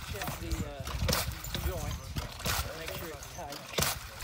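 People talking, with a few sharp knocks about one second, two and a half seconds and just before four seconds in.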